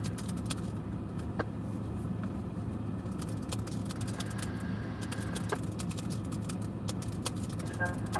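Steady low hum of a car idling, heard from inside the stationary cabin, with scattered faint clicks.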